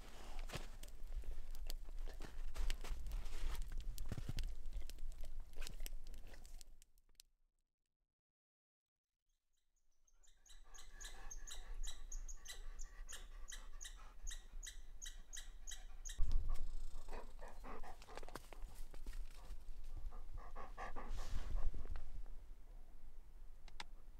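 Campfire crackling, then a few seconds of dead silence. After that a fast run of high chattering notes, about five a second, typical of a red squirrel, then a sudden thump and a dog panting close by near the end.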